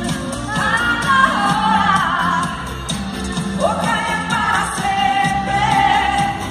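Live pop song: a woman's lead vocal through a handheld microphone over an amplified band with a steady beat, with a long held note near the end.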